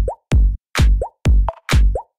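Minimal house track: a four-on-the-floor kick drum about twice a second, with a short upward-gliding synth blip between kicks.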